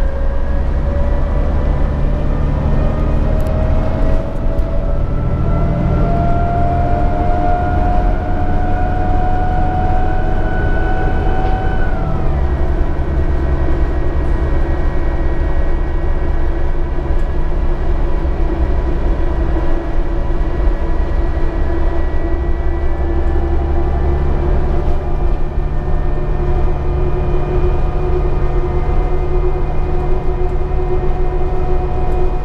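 Diesel drivetrain of a 2013 New Flyer D60LFR articulated bus heard from inside the cabin: a steady low rumble with a whine that rises as the bus accelerates, falls abruptly about twelve seconds in as the transmission shifts up, then holds steady at cruising speed.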